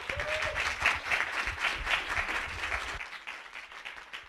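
Audience applauding. The clapping is dense for about three seconds and then thins out toward the end.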